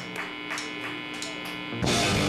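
Steady electric hum from the band's guitar amplifiers, with a few scattered claps, then the rock band comes in suddenly and loudly near the end with drums and electric guitars.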